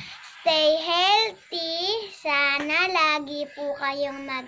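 A young girl singing alone, a few sung phrases of held, sliding notes with short breaks between them.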